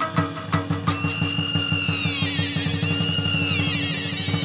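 Chầu văn ritual music with a fast, steady drum roll. A high ringing tone slides down in pitch over it, after a few sharp percussion strikes in the first second.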